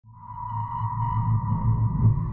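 Title ident music of a TV documentary: a sustained high electronic tone over a low throbbing drone, fading in at the start.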